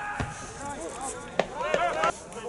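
Football match play: two sharp thuds of the ball being kicked, one just after the start and a louder one past the middle, followed by players shouting on the pitch.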